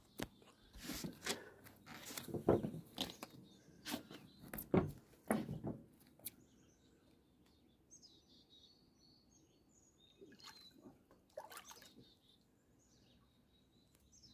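A run of knocks and bumps in the first half, then small birds chirping in the background, with a couple more brief knocks near the end.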